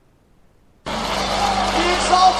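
Near silence, then a little under a second in, the next item in the stream cuts in loudly and abruptly: a dense noisy wash with a steady low hum, with voices entering over it.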